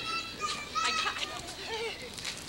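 High-pitched children's voices calling out in play, several short cries.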